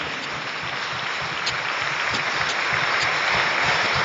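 Audience applause: a steady spread of clapping that grows slightly louder toward the end.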